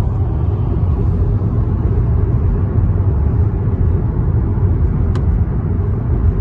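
Steady low rumble of a Chevrolet car driving at speed on an expressway, heard from inside the cabin: road and engine noise. One short click about five seconds in.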